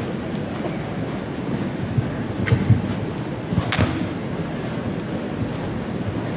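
Hooves of a cantering show jumper thudding on the sand footing of an indoor arena, a few dull beats in the middle, with one sharper knock among them, over a steady background rumble of the arena.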